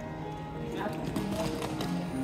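Upright public piano being played, a few held notes ringing and changing pitch, with light footsteps tapping on a stone floor.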